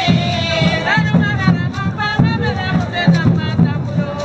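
Baga women's group singing a traditional song in chorus, voices rising and falling together over a steady low beat of about three pulses a second.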